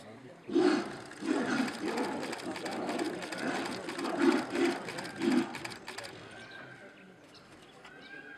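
Bengal tigers snarling and roaring as they fight, a run of loud bursts starting about half a second in and stopping after about five seconds.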